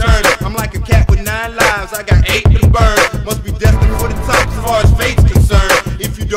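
Hip hop song: a vocalist rapping over a beat with heavy low kick drums.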